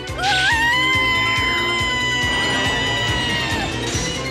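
A woman's long, high scream, wavering as it starts and then held at one steady pitch for about three seconds before it drops off near the end, over dramatic background music.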